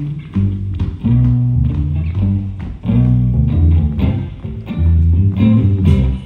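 Live band intro of electric guitar and bass guitar playing a rhythmic riff, the low bass notes loudest, before the saxophone comes in.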